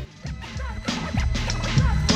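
Turntable scratching over a stripped-down hip-hop beat. The full beat drops out suddenly at the start, and short scratches rise and fall in pitch several times over sparse drum hits.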